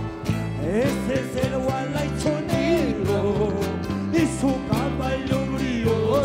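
Wayliya, Andean dance music from a live band: a steady, repeating bass beat under a sliding melody line, played without a break.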